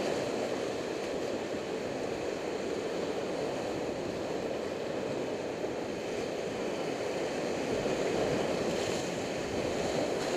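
Whitewater rapids rushing and splashing around an inflatable raft, a steady churning of water that grows a little louder near the end.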